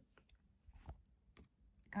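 A few faint clicks and taps from fingers handling an eyeshadow palette case, the loudest about a second in.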